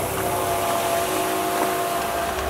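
Salt water churning and gurgling in a plastic tote as a pump's return flow agitates it to dissolve the salt into brine, over a steady machine hum.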